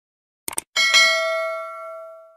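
Subscribe-animation sound effect: a quick double click, then a bell ding that rings on with several overtones and fades away over about a second and a half.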